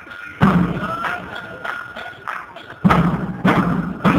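Murga street drums, a large bass drum, a snare and a painted barrel-style drum, beaten in a rhythm. The beating thins out just after two seconds in and comes back with a heavy stroke shortly before the end.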